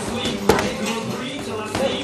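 Boxing gloves landing punches in sparring: one sharp smack about half a second in, with a few lighter knocks.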